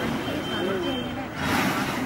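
People's voices talking outdoors, with a short loud burst of hissing noise about a second and a half in.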